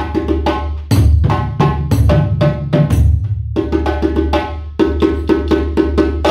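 West African drum ensemble: a hand-played djembe over upright dunun bass drums struck with sticks, playing a fast, steady interlocking rhythm of many strokes a second.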